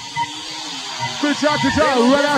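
Breakdown in a makina dance track on the DJ's mix: the kick drum and bass have dropped out, leaving a thin backing, and about halfway through a voice comes in over it.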